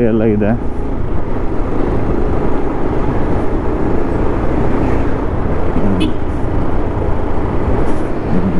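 Bajaj Pulsar 150 motorcycle's single-cylinder engine running steadily while riding along a road, with a steady rush of road and wind noise.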